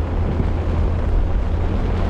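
Heavy rain on a car's windshield and roof, heard from inside the cabin over a steady, heavy low rumble.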